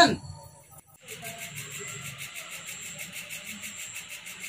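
Outdoor background ambience with a high, evenly pulsing chirp, about six beats a second, over faint lower sounds. It sets in about a second in, after the end of a shouted word.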